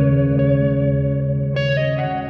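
Progressive rock music: a guitar with chorus and echo effects holds a chord over a low sustained bass, and a new chord is struck about one and a half seconds in.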